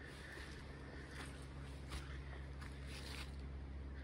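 Faint footsteps on a leaf-strewn earth path, a short crunch about every two-thirds of a second, over a low steady rumble.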